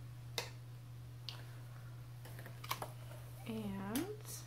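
A few sharp light clicks and taps of objects handled on a desk as a painting board is picked up, over a steady low hum. A woman's voice begins near the end.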